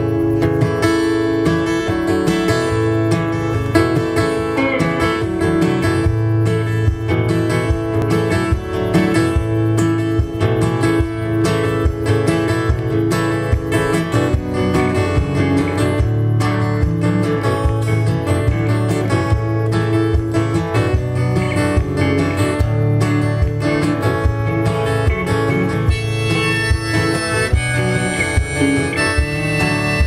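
Acoustic guitar strummed in a steady rhythm with an electric guitar playing along: the instrumental intro of a song, before any singing.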